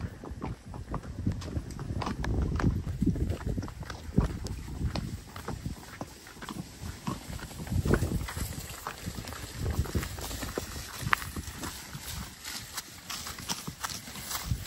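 Horse hooves clopping on a dry dirt lane, uneven steps at a walk.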